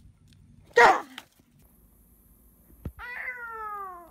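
About a second in, a goat gives a short, loud, rough bleat. Near the end, a young girl lets out a long, slowly falling crying whimper.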